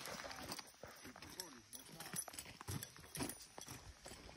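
Faint, indistinct talk in low voices, with a few short crunching steps on gravel.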